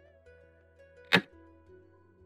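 One sharp clack of a xiangqi piece being set down, the game-replay move sound as the red chariot moves, about a second in. Soft plucked-string background music runs underneath.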